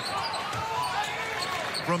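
A basketball being dribbled on a hardwood court over the noise of an arena crowd; a commentator starts speaking near the end.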